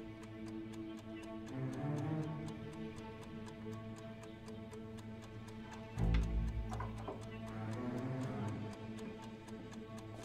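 Chess clock ticking steadily and rapidly under a sustained, low, tense film score; a deep low swell enters in the music about six seconds in.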